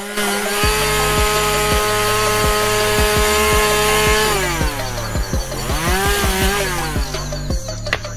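Gasoline chainsaw cutting into a large tree trunk at high revs. Its engine note holds steady for about four seconds, then drops and climbs again twice as the revs change. Background music with a steady beat runs underneath.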